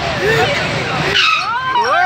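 Riders on a swinging-boat fairground ride shouting and shrieking over a noisy rush of air as the ride swings, with a sharper burst of noise about a second in.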